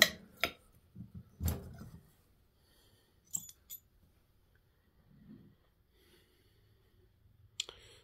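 Metal turbocharger parts clicking and knocking as a Garrett T3 turbo's center section is taken apart by hand and the turbine shaft slid out of the bearing housing. There are a few sharp clicks in the first two seconds, two light ticks near the middle, and one more click near the end.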